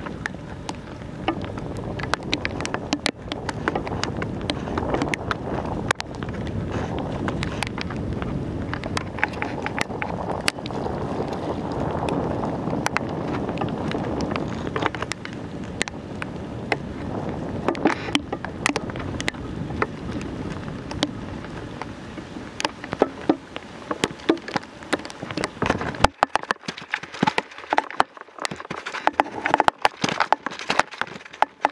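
Wind buffeting the microphone of a camera carried on a moving bicycle, mixed with frequent sharp clicks and rattles. About 26 seconds in, the rumble of the wind drops away and only the scattered clicks are left.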